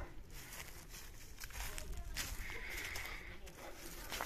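Faint footsteps crunching on dry leaf litter, with a short high steady note about halfway through.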